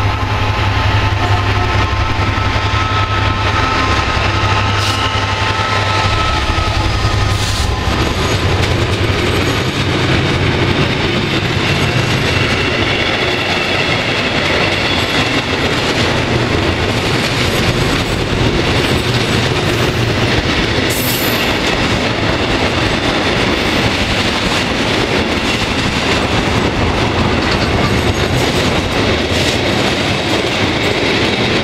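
Freight train passing close by. For the first several seconds a deep steady engine hum is heard, the Class 66 diesel locomotive's two-stroke EMD V12. After that the container and tank wagons roll past with continuous steel wheel-on-rail noise.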